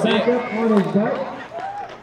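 Indistinct talking: people's voices, with no other clear sound.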